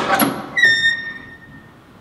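Stripped Foxbody Mustang's steel door being opened: a brief rustle, then a sharp metallic latch clack about half a second in that rings on in a high tone, fading over about a second.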